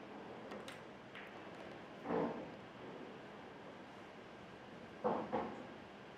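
Pool balls being played: faint sharp clicks of the cue tip on the cue ball and of balls striking, with two short, duller, louder knocks about two and five seconds in, over a low steady room background.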